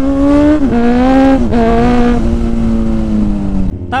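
Motorcycle engine running at steady high revs while riding, a single droning note whose pitch dips briefly twice, then slowly falls and cuts off suddenly just before the end.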